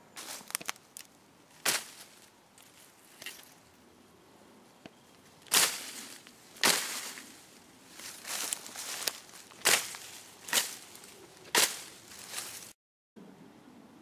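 Tanto-style knife blade on a three-section survival baton being swung through nettles and grass, each stroke a sharp swish and crunch of cut stems. About a dozen strokes come at irregular intervals, roughly a second apart, with the loudest about halfway through.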